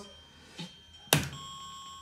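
Electronic sounds from a coin-operated fruit slot machine: a faint high tone, then a sharp click about a second in, followed by a steady electronic tone at several pitches.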